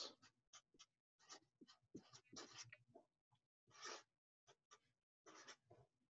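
Faint scratching and squeaking of a felt-tip marker writing on a sheet of paper, in many short strokes with brief pauses between them.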